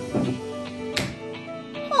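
An aluminium beer can being cracked open: the pull tab gives one sharp snap about a second in. Background music plays under it.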